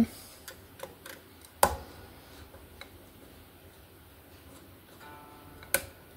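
Screwdriver working the pickup-height screws of an electric guitar: scattered light ticks, with a sharp click about a second and a half in and another near the end. A brief faint string ring comes just before the last click.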